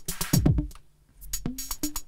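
Arturia DrumBrute analogue drum machine playing a beat through a Korg MS-20 synthesizer's filter: deep kicks that fall in pitch, with crisp hi-hat ticks. The sound drops out briefly about a second in before the next kick.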